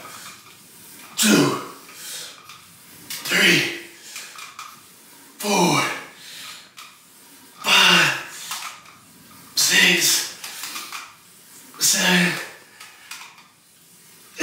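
A man grunting and breathing out hard with the effort of each pull on a cable pulldown machine. There are six grunts, about two seconds apart, and each one falls in pitch.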